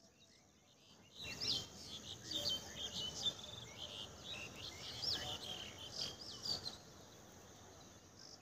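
Birds calling: a run of short, high chirps and rising-and-falling whistles starting about a second in and stopping shortly before the end, over faint outdoor background.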